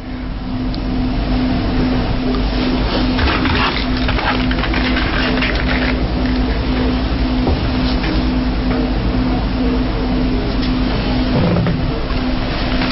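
Loud steady rumble and hiss with a low humming tone that breaks up at even intervals, and no voice: the audio clip cued for broadcast is coming through as noise, and it is not heard in the studio.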